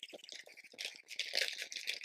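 Small foil and plastic blind-bag packets crinkling and rustling in the hands, in short irregular crackles.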